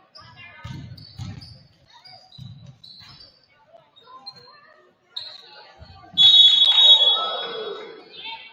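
A basketball dribbled a few times on a hardwood gym floor, with short squeaks. About six seconds in, a referee's whistle blows loud and long over shouting from the stands, stopping play.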